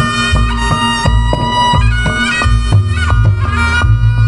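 Reog Ponorogo gamelan music: a slompret (reed shawm) playing a sustained, reedy melody over a steady beat of drums and gongs.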